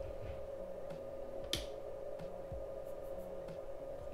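A single sharp click about one and a half seconds in, the power switch of a 2000 W pure sine wave inverter being switched off, over a steady faint hum.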